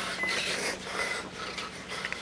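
A person breathing close to the microphone in short breathy swells, over a faint steady hum.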